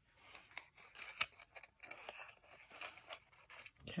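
Patterned paper box being folded and pressed together by hand: dry paper rustling and scraping with small clicks as the taped flaps are stuck down, one sharper click about a second in.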